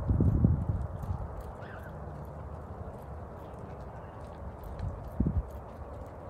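Low rumbling gusts of wind buffeting the microphone in the first second, settling into steady outdoor background noise, with a single low thump near the end.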